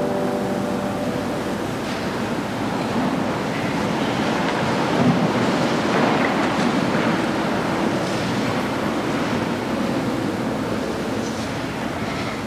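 A steady rushing noise with no clear pitch, as the last notes of piano music fade out about a second in.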